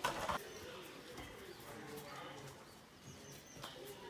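Faint bird calls with a cooing, dove-like quality in the open air, opened by a short rush of noise at the very start.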